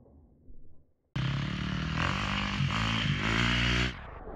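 Dirt bike engine running loud close to the microphone, its pitch rising and falling as the throttle is worked. It starts abruptly about a second in and cuts off just before the end.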